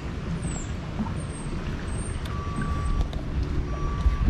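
Wind rumbling on the microphone over a steady outdoor background, with a faint thin tone heard twice in the second half.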